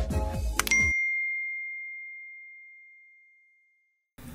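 Electronic intro music cuts off about a second in, with a click and a single bell-like ding sound effect. The ding is one clear high tone that rings on and fades out over about two seconds.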